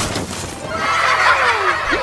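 A horse whinnying: one long call of falling, quavering pitches that starts about half a second in.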